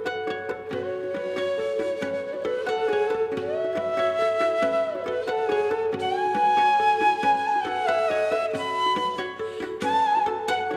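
Instrumental Middle Eastern world music: a bansuri flute plays a slow melody of long held notes with slides between them, coming in about a second in over plucked-string accompaniment.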